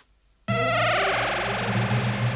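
Near silence, then about half a second in loud music cuts in abruptly: the series' title bumper sting, with steady low notes under many held tones and a high falling sweep near the end.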